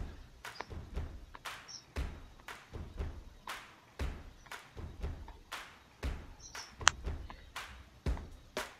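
A string of soft taps and low thumps, roughly two a second.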